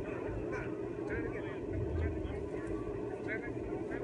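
Faint, brief voices calling over a steady low background rumble.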